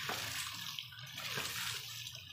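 Water gushing and splashing out of the open waste valve of a homemade 4-inch PVC hydraulic ram pump as it runs, a steady spattering rush onto the wet ground.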